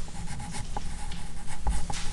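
Pen writing on paper: a run of short scratching strokes as a word is handwritten.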